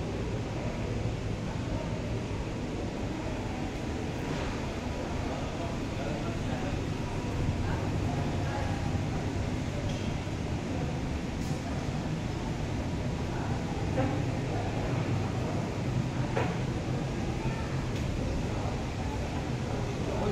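Shopping-mall background: indistinct voices over a steady low hum, with no single event standing out.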